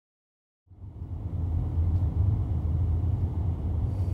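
Steady low rumble of a car's engine and tyres heard from inside the moving car, cutting in suddenly under a second in after dead silence.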